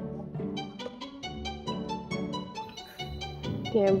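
Instrumental background music on strings, led by a violin, in a run of short, changing notes.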